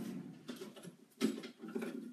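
A kitchen drawer being opened and rummaged through: scratchy rustling and scraping with a few light clicks, the sharpest a little after a second in.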